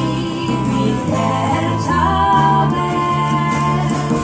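Live acoustic folk music: a female voice singing a slow ballad in Swedish over acoustic guitar accompaniment.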